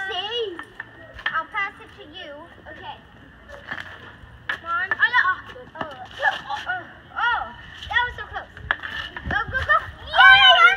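Children's voices calling out in many short, high cries, with a few sharp clacks of street hockey sticks striking on asphalt.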